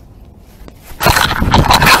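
A body-worn camera is grabbed and picked up off the ground, and its microphone is rubbed and scraped by hands. After about a second of quiet, loud handling noise starts suddenly.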